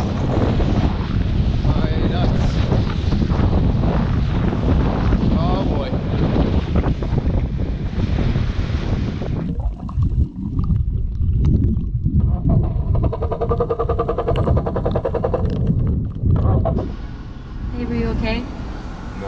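Small inflatable mini boat running fast over choppy sea, with wind buffeting the microphone and water rushing past the hull. About halfway through the sound turns muffled and underwater, and a steady droning tone comes in a few seconds later and stops near the end.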